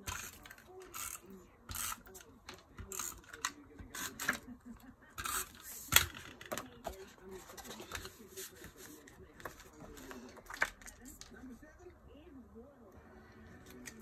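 Short, irregular rasps of a Stampin' Up Snail adhesive tape runner being rolled along a card insert, mixed with the rustle and light taps of cardstock being handled and pressed down; the sharpest click comes about six seconds in.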